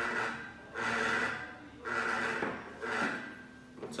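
A vibration alerter resting in a ceramic bowl buzzes and rattles against the bowl in four short bursts about a second apart. This is the pattern it gives when the four coins under the plate on the mat base all show the same colour.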